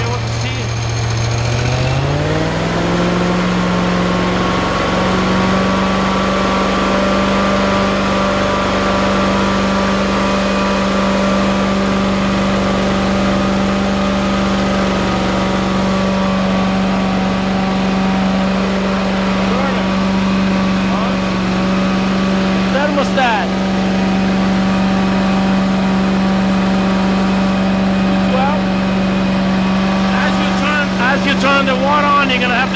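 Kohler Command Pro 30 V-twin engine on a carpet-cleaning unit, speeding up about two seconds in as the throttle is opened, then running steadily at the higher speed. That speed is about 2800 RPM or more, which the generator needs to make enough current to run the burner without smoking.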